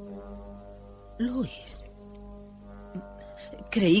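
Background film score of sustained low held notes that shift to a new chord about halfway through. A brief voice sound, falling in pitch, comes about a second in.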